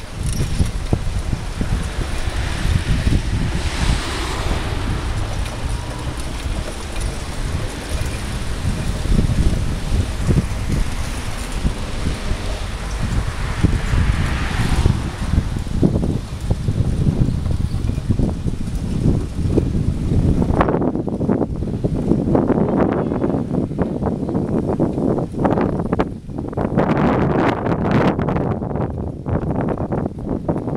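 Wind buffeting the microphone of a camera riding on a moving bicycle, a continuous rumble with hiss above it. About two-thirds of the way through, the hiss thins out and the rumble turns more gusty.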